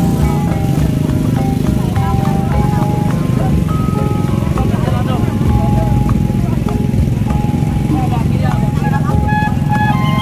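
Loud music played through a truck-mounted horn loudspeaker sound system: a melody of short held notes over heavy bass, with the voices of a large crowd mixed in.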